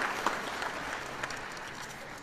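Audience applauding, the clapping fading away.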